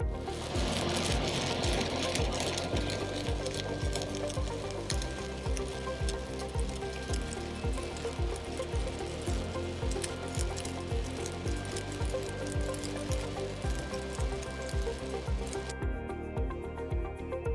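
Stick-welding (SMAW) arc crackling steadily as an electrode lays the final cap pass on a steel test coupon, under background music with a steady beat. The crackle cuts off suddenly at the end.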